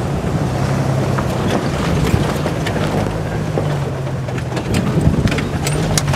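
Open-top Jeep's engine running steadily as it drives over a rough dirt trail, with wind on the microphone and scattered knocks and rattles from the bumpy ride.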